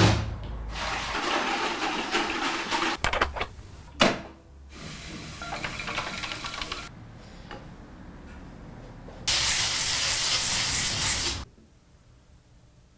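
A string of short pottery-studio work sounds: a block of clay knocked down on a wooden table at the start, clicks and another knock about four seconds in, and stretches of rushing hiss, the loudest near the end before it cuts off.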